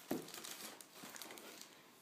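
Faint rustling and crinkling of small product packaging being handled, with a slightly louder rustle right at the start.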